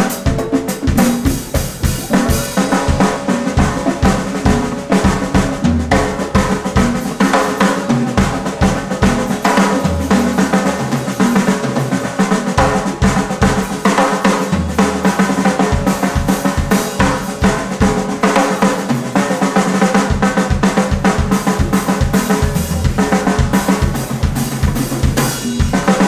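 Live blues-funk band playing an instrumental groove: a drum kit beating a busy pattern up front, with bass guitar and electric guitars underneath.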